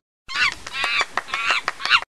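Monkey call sound effect: about eight short, high calls in quick succession, starting and stopping abruptly.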